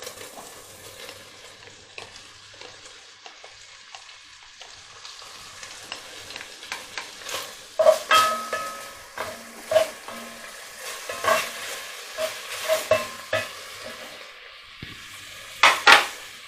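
Diced bacon sizzling as it fries in hot oil and beef fat in a cast iron casserole dish, with a spoon stirring it and knocking and scraping against the pot from about eight seconds in.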